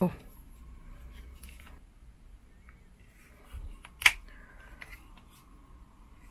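Hands handling a GoPro in a plastic vlog case as it is fitted onto a mount: faint knocks and rubbing, with one sharp click about four seconds in.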